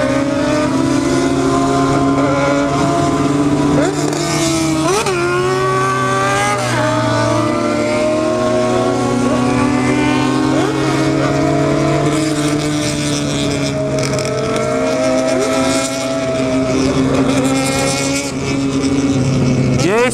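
Motorcycle engine heard from on board while riding, holding steady cruising revs with a few small rises and dips, over wind rush.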